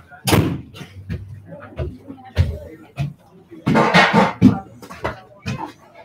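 People talking close to the microphone, with a sharp knock just after the start and another about two and a half seconds in.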